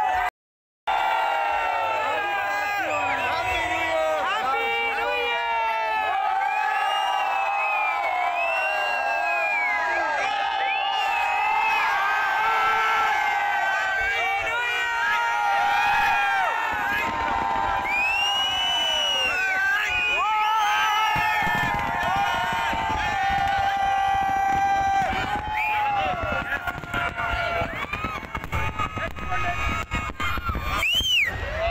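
A large crowd cheering, whooping and shouting, many voices rising and falling over one another. From about two-thirds of the way through, firework bursts start going off beneath the cheering as a rapid run of bangs.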